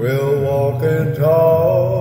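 Slow sacred song: a male voice sings a few long, held notes with vibrato over a steady low instrumental accompaniment.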